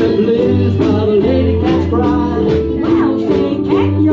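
Live ukulele band playing: strummed ukuleles over a steady bass line and drums.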